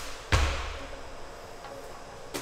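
One heavy thud on a wooden gym floor about a third of a second in, with a low tail that rings on briefly, from a lateral bound with a medicine ball.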